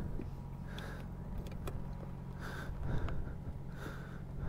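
A motorcycle engine idling steadily, with a few light clicks and knocks over it.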